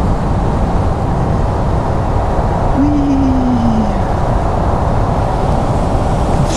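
Wind rushing over the microphone with engine and road noise from a Can-Am Spyder RT-S roadster riding at speed. A brief falling tone comes about halfway through.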